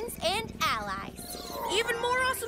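Cartoon creature vocalizations: a giant cat-like creature purring in a low rumble, under bending, voice-like calls.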